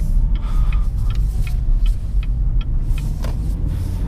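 Inside the cabin of a 2016 Cadillac ATS-V coupe, with its twin-turbo V6, pulling away at low speed: a steady low rumble of engine and road, with a few faint light ticks scattered through.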